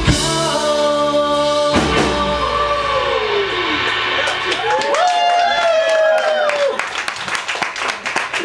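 Live rock band with electric guitar, bass and drums ending a song: a crashing chord hit at the start and another about two seconds in ring out, then sustained tones bend up and down, and clapping begins near the end.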